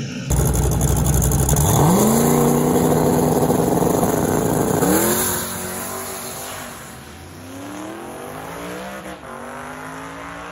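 Turbocharged drag cars launching hard off the line at full throttle. The engine note comes in suddenly and climbs in pitch, holds, then climbs again about five seconds in as they shift up. It then fades as they run away down the strip.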